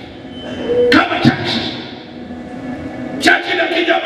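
A man preaching into a microphone, his voice carried through the hall's sound system, in loud bursts with short pauses between phrases.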